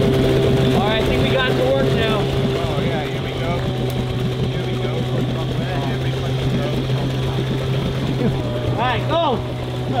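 Small outboard motor on an inflatable boat running steadily, churning the water; its note drops slightly about eight seconds in.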